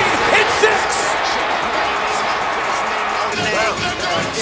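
Background music mixed with the steady noise of a stadium crowd from a football broadcast, with a voice coming in near the end.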